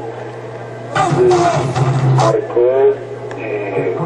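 Indistinct talking, loudest from about one to three seconds in, over a steady low hum.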